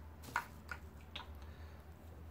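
Light clicks from handling a tube of polishing paste and a cotton pad: one sharp click about a third of a second in, then two fainter ticks.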